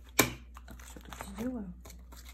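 Clear plastic binder pocket sleeves crinkling as photocards are handled and slid in, with one sharp click just after the start.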